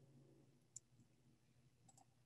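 Near silence with faint computer clicks: one short, sharp click about three quarters of a second in and a fainter one near the end.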